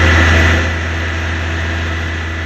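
A vehicle engine running steadily at the scene: a strong low hum under a haze of noise, loudest in the first half-second.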